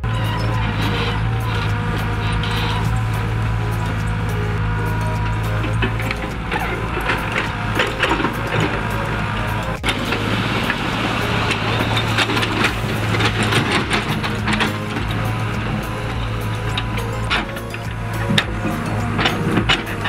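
Mini tracked excavator's diesel engine running steadily as its bucket digs into soil, with scattered knocks and scrapes from the bucket. Music is heard along with it.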